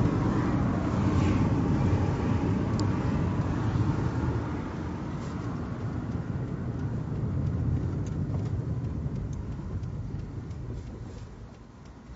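Road and engine noise heard inside a moving car's cabin: a steady low rumble that grows quieter towards the end.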